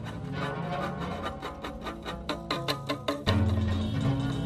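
Free-improvised jazz: a bass holds low notes under a run of sharp percussive hits that come thicker and faster towards the middle. About three seconds in, a loud low bass note comes in.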